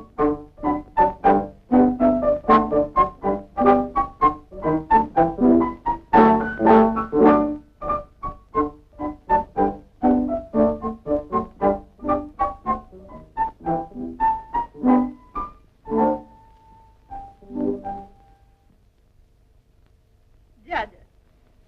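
Piano music: a quick run of notes, several a second, that thins to a few scattered notes and stops about 18 seconds in.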